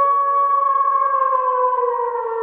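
A sustained electronic tone with several pitches sounding together, held at a steady level and beginning to slide slowly down in pitch about a second in.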